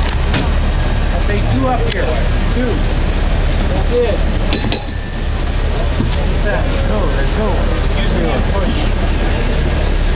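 San Francisco cable car under way: a steady low rumble from the car, with a few sharp clanks and, about halfway through, a single high metallic ring that holds for about two seconds.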